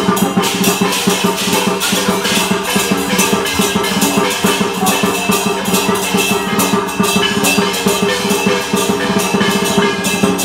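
Dragon dance percussion: a Chinese drum beaten in a fast, steady rhythm with clashing cymbals and ringing gongs, playing continuously.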